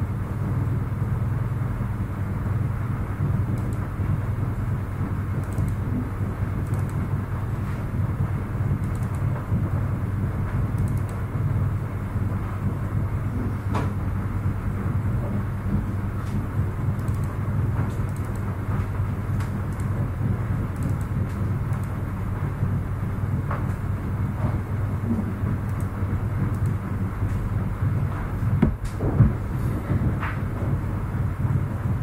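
Steady low background hum with a few faint clicks.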